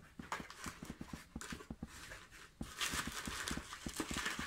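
Crumpled brown packing paper and bubble wrap crinkling and rustling as a hand pushes into a cardboard box, a fast, irregular run of small crackles.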